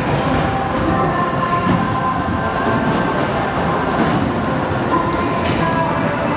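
Stunt scooter wheels rolling over a concrete skatepark floor: a steady rumble with a faint, steady whine.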